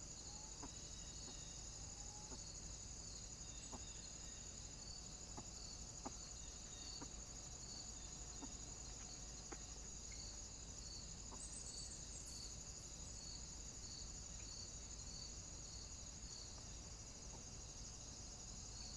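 Faint, steady high-pitched insect chorus with an evenly pulsing note beneath it, and a few scattered faint clicks and snaps.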